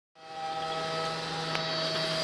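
TARUS HM5L horizontal-arm five-axis CNC machining center milling a part: a steady machine hum with several held tones over a hiss from the spindle and cutter. It fades in at the start, with a brief tick about one and a half seconds in.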